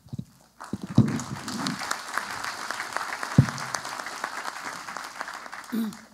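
Audience applauding, starting under a second in and dying away just before the end, with a single thump about midway that stands out above the clapping.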